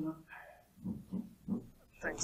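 Faint, off-microphone speech in a lecture room: a few quiet syllables between louder on-mic talk.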